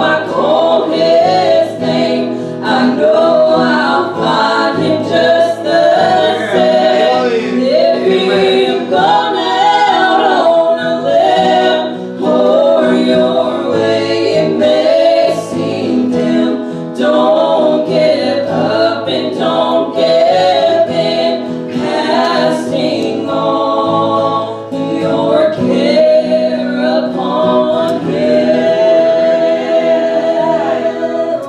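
A small group of singers, women's voices leading, sings a gospel song in harmony with acoustic guitar accompaniment, in continuous phrases with brief breaths between lines.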